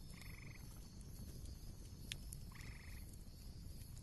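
Faint background ambience with two short pulsed animal calls, each about half a second long: one just after the start, the other about two and a half seconds in.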